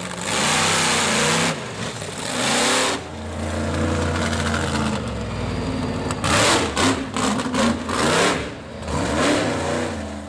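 Monster truck engines revving hard, the pitch rising and falling again and again, with several loud surges of throttle.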